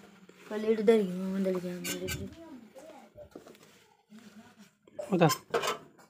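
Metal ladle and utensils clinking against a kadhai of cooked curry on a gas stove: two sharp clinks about two seconds in, then a few light ticks. A long, drawn-out voice comes early on and a short spoken word near the end.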